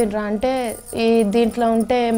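A woman talking, with no other sound standing out.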